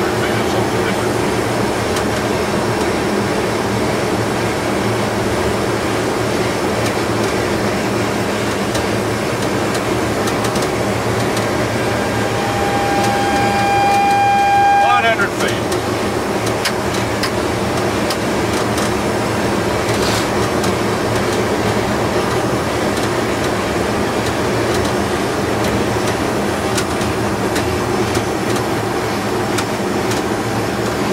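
Steady cockpit noise of a Boeing 727-200 on final approach with gear and flaps down: rushing airflow and engine noise. About halfway through, a steady high tone sounds for about three seconds and ends in a quick downward slide.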